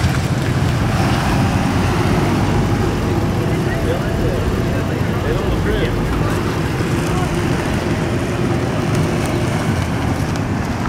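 Engines of a utility-bed work truck and a sedan running as they drive slowly past close by, a steady low rumble throughout.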